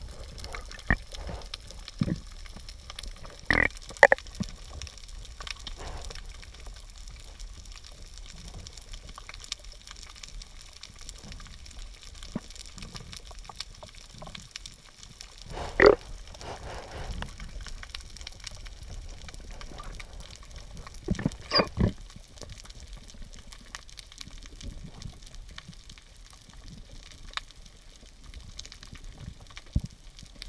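Underwater sound of scuba diving: a low steady underwater rumble broken by sporadic short gurgling bursts of exhaled regulator bubbles, the loudest about halfway through and a quick cluster a few seconds later.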